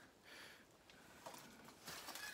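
Near silence: faint outdoor background.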